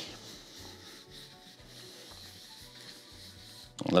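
Quiet background music, with a cloth faintly rubbing oil into a stained rosewood guitar fretboard.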